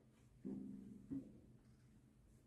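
A cello being handled and lifted upright: a faint string tone rings briefly as the instrument is moved, ending in a short knock against its wooden body.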